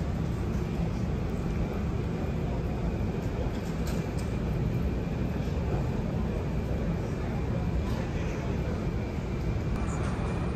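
Steady low outdoor rumble of vehicle traffic.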